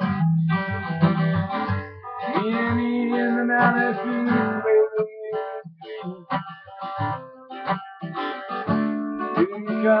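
Acoustic guitar played with strummed and picked chords, an instrumental stretch of a song with the notes changing every second or two.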